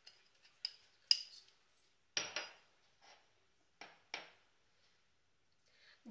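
A metal spoon clinking and scraping against a small ceramic dish and a steel pot as spice powder is spooned in: a handful of light, separate clinks, one with a short ring about two seconds in.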